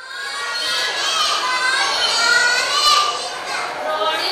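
A classroom of young children's voices, many talking and calling out at once so that their high voices overlap. It fades in over the first second.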